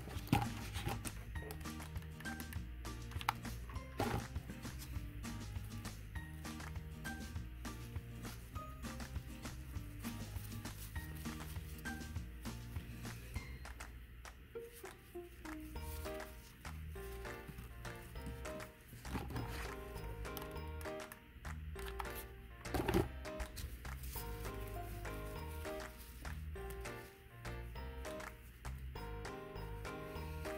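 Soft instrumental background music with a steady low bass line and a light melody. A few brief clicks sound over it, the loudest a little after twenty seconds in.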